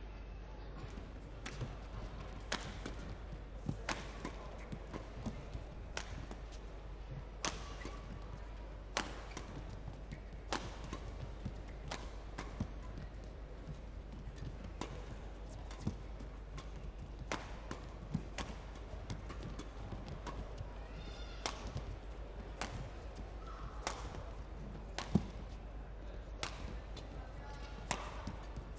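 Badminton rackets striking a shuttlecock back and forth in a long doubles rally, a sharp crack about once a second, the loudest about three seconds before the end. Short squeaks of court shoes on the mat come in between the hits in the last part.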